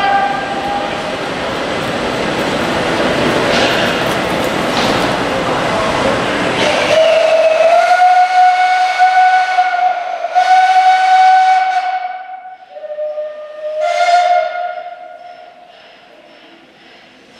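Loud rushing steam for about seven seconds, then a steam railway whistle blows a long steady note, breaks off, sounds a slightly lower note and blows the first note again before fading near the end.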